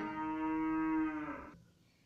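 A single steady, voice-like pitched tone held for about a second and a half, then fading out into silence.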